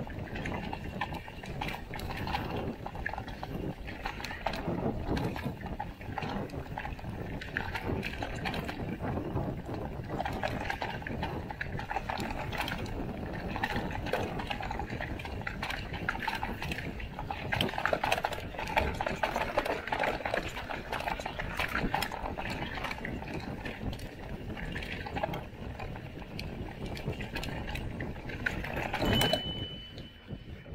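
Mountain bike clattering over rough rock and dirt on a descent: tyres crunching and the frame, bars and drivetrain rattling in quick irregular knocks. A short high steady tone sounds near the end.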